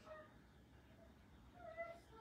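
Faint meowing of a cat: a few short calls, the clearest near the end.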